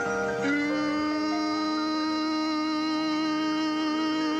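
Instrumental introduction to a slow ballad, without vocals: a long sustained chord that comes in about half a second in and is held steadily.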